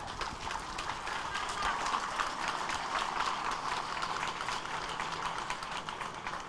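Audience applauding: a steady, dense clatter of many hands clapping.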